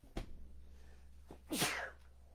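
A person sneezes once, a short loud burst about one and a half seconds in, after a small click near the start. A steady low hum runs underneath.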